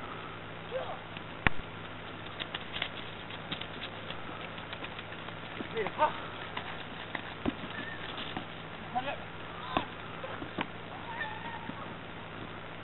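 Outdoor field-game ambience: brief distant shouts from players come through now and then over a steady low hum. Several sharp knocks stand out, the loudest about a second and a half in.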